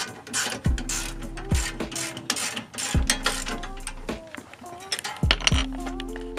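Background music with a steady beat, with the rapid clicking of a socket ratchet wrench being worked on a suspension bolt under it.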